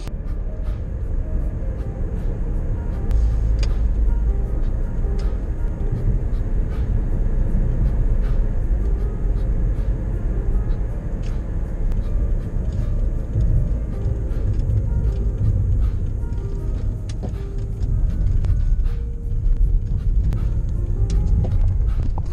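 A car driving, with a steady low road rumble, and music playing over it.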